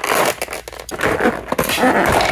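Clear plastic bag crinkling and rustling as it is handled and pulled open around an action figure.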